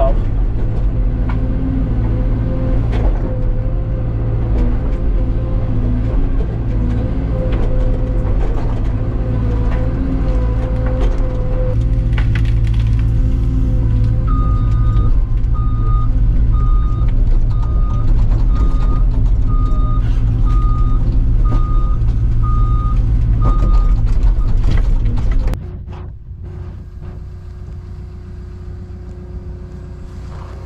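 CAT 314 excavator's diesel engine running steadily under work, heard from inside the operator's cab. About halfway through, the machine's travel alarm beeps evenly, a little more than once a second, for about ten seconds. Near the end the sound drops abruptly to a quieter, steady engine hum.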